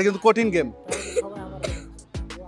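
A man's voice calls out a word over background music, followed by short throat-clearing sounds.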